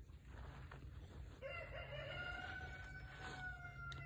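A rooster crowing faintly: one long crow that starts about a second and a half in and holds steady for over two seconds.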